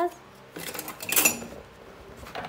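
Metal scissors clattering against the craft table and other tools, with a short metallic ring, as one sticky pair is put aside and another pair picked up. The clatter comes in a quick cluster, loudest just after a second in.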